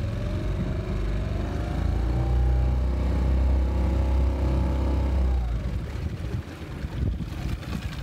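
Tohatsu 6 hp four-stroke outboard motor revving up from trolling speed, rising in pitch over the first couple of seconds. It holds at the higher revs, where its charging output lifts the battery voltage, then drops back down about six seconds in.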